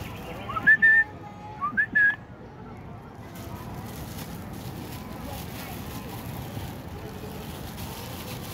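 Asian pied starling (jalak suren) giving two clear whistled notes, each sliding up and then holding for a moment, about a second apart in the first two seconds.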